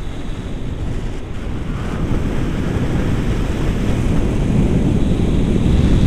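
Airflow buffeting the camera's microphone in paragliding flight: a steady low rumbling wind noise that grows slowly louder.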